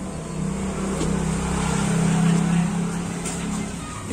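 A motor vehicle passing on the street, its engine hum growing louder to a peak about two seconds in and then fading away.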